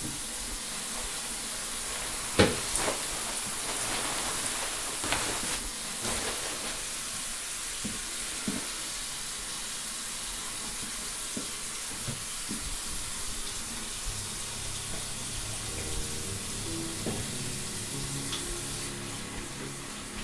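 Bathroom sink faucet running steadily, water splashing into the basin, with a few sharp knocks of handling at the sink, the loudest about two seconds in.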